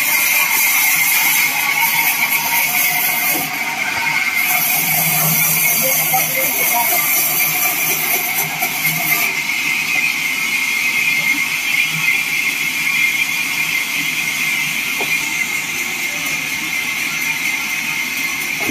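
Vertical bandsaw mill running and sawing through a wooden slab as it is fed along the table: a steady sawing noise with a constant high tone. The bright hiss on top drops away about halfway through.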